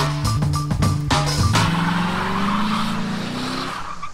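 Music with a steady beat, then about one and a half seconds in a car's engine revving high while its tyres squeal and spin on pavement in a burnout, the engine note slowly rising before it fades near the end.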